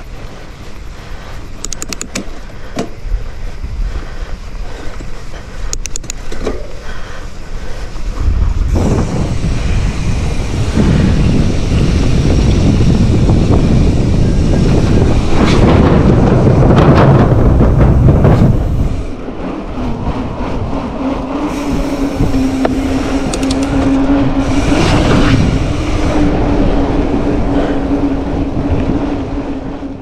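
Mountain bike being ridden, heard from a handlebar-mounted camera: tyre rumble and wind on the microphone. It is quieter with a few rattling clicks over the first few seconds, much louder from about a third of the way in, and in the last third a steady hum runs under the noise.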